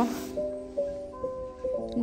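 Music: a slow, soft melody of held notes that change pitch about every half second.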